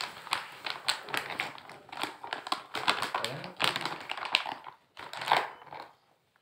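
Plastic mass-gainer bag crinkling and rustling as it is handled by hand, in quick irregular crackles.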